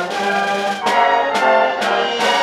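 Concert band playing a loud passage with the brass to the fore, sustained chords punctuated by three accented beats about half a second apart.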